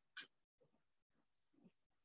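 Near silence: faint room tone with a few brief, faint sounds, the loudest about a fifth of a second in.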